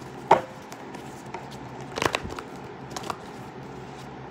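Tarot cards being shuffled and handled, giving a few short taps and flicks, with a small cluster about two seconds in.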